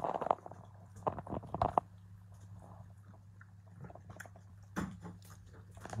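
A French bulldog chewing and crunching a small treat, with a cluster of crisp crunches in the first two seconds and a few more near the end, over a faint steady low hum.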